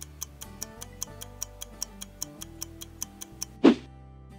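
Stopwatch ticking sound effect, about five quick ticks a second, over soft background music. A short whoosh comes near the end.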